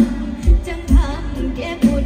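A woman singing a Thai Isan-style song live with a band, amplified over a PA. A wavering vocal melody runs over sustained keyboard and bass, with heavy bass-drum booms about once a second.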